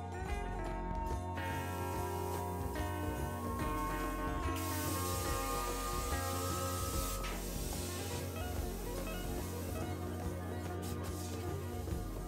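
Background music, with a CNC plasma cutter's torch hissing for about three seconds in the middle as it cuts a round hole in a metal lid.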